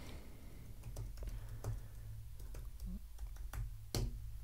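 Typing on a computer keyboard: faint, irregular key clicks, with one sharper keystroke near the end.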